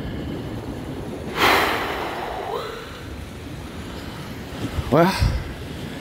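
A person's loud breathy exhale about a second and a half in, trailing off in a falling voiced sigh, over a steady wash of surf and wind noise on the microphone.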